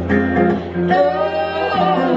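Live song played on acoustic guitar and a Nord Electro 6 stage piano, with singing over it.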